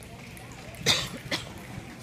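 Two coughs close by, about half a second apart, the first louder, over a low murmur of voices.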